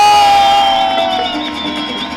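A mariachi band's last long held note fades out over a second or so while the audience cheers.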